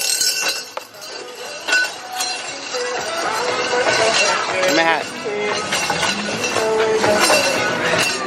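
Light metallic clinks and clanks, sharp and scattered, over the voices of people talking and calling out around the ride exit.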